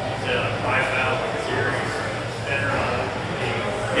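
Faint speech from an audience member asking a question away from the microphone, over a steady low room hum.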